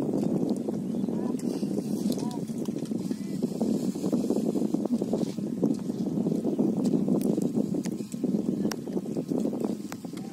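Hands sloshing and splashing through shallow muddy water as a man gropes for fish, with a few sharper splashes near the end.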